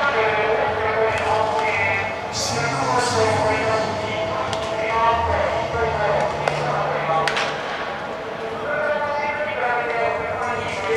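Voices calling and talking in a large indoor stadium during batting practice, with sharp cracks of a bat hitting balls: one at the start, one about two and a half seconds in and one about seven seconds in.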